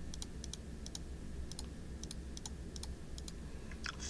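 Light clicks of computer keys, about a dozen spaced unevenly over a few seconds, as a sum is keyed into a calculator program, over a faint steady low hum.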